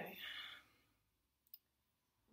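Near silence in a pause of speech, broken by one short, faint click about one and a half seconds in.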